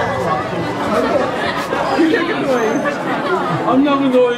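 Several people talking at once: loud overlapping chatter of many voices, with no single clear speaker.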